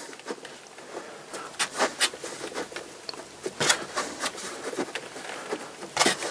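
Irregular light taps and knocks, a few a second, of hands on a leather-hard clay pot held upside down on a turning potter's wheel as it is centred for trimming.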